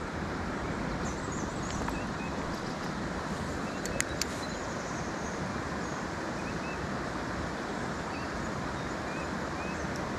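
Steady rushing of creek water flowing past a concrete spillway, with two sharp clicks about four seconds in.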